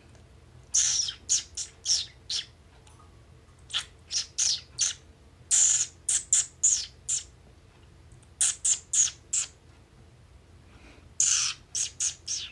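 Small pet bird chirping: groups of four or five short, high, downward-sliding chirps, each group about a second or two long with quiet gaps between.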